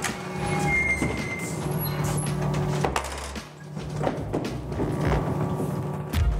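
Historic rope-operated lift in an old water-powered, belt-driven mill running, with a low rumble of machinery and several wooden knocks as the platform rises, under background music.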